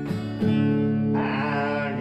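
Steel-string acoustic guitar strummed in chords, with a fresh strum about half a second in. A man's singing voice comes in over the guitar a little past one second.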